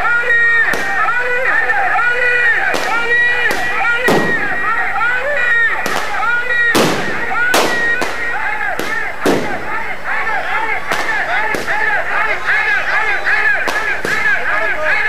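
Firecrackers going off one after another, about a dozen sharp bangs at uneven gaps, over a crowd's continuous loud voices.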